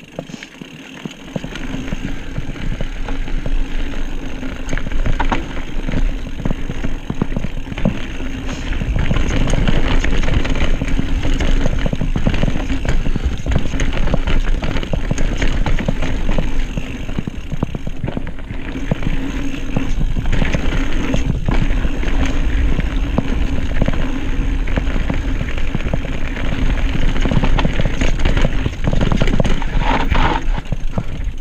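Cannondale Habit 3 carbon mountain bike ridden fast down a dirt singletrack: tyres rolling over dirt and roots, with the bike clattering and rattling over the bumps and wind rumbling on the camera microphone. It gets louder from about nine seconds in.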